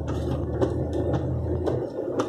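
Car cabin sound while driving: a steady low engine drone with a regular mechanical tick about twice a second.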